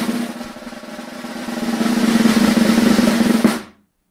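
Snare drum roll sound effect played from a soundboard, swelling in loudness and then cutting off shortly before the end.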